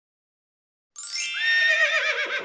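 A horse whinny starting about halfway through after silence: a high call that steps up in pitch, then quavers and trails down.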